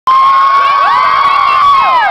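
Crowd of young children screaming and cheering: one long high-pitched held scream over many overlapping shrieking voices, which slide down in pitch near the end.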